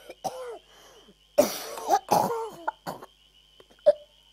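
A person coughing in a rough, hacking fit: a short cough, then a long loud spell of coughing about a second and a half in, and a few single coughs, the last one near the end.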